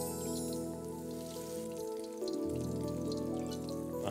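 Crumb-coated ice cream balls deep-frying in hot oil, a faint crackling sizzle, under background music of held chords whose bass changes about two seconds in.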